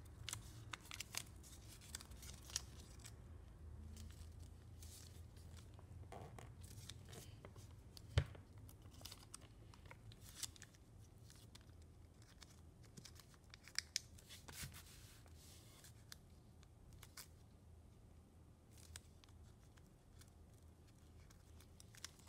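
Red foil origami paper being folded and creased by hand: faint, scattered crinkles and crackles, with one sharper click about eight seconds in.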